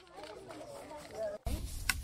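Children's voices chattering, faint at first. About a second and a half in, they become louder, with a low rumble of wind or handling noise and a sharp click just before the end.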